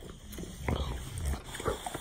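English bulldog breathing and making short, irregular grunt-like noises at close range while mouthing and tugging on a toy.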